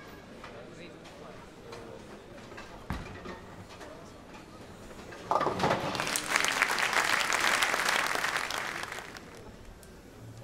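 A bowling ball thuds onto the lane about three seconds in and crashes into the pins a little over two seconds later, then the crowd applauds for about four seconds, fading out near the end.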